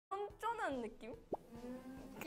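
A young woman speaking Korean, with a quick rising 'bloop' sound effect about two-thirds of the way through, followed by a held 'hmm'.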